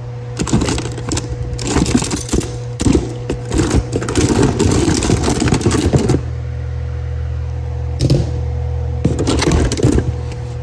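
Metal bicycle caliper brakes clattering and rattling against each other in a cardboard box as they are rummaged through, in two spells with a quieter gap of about two seconds after the middle. A steady low hum runs underneath.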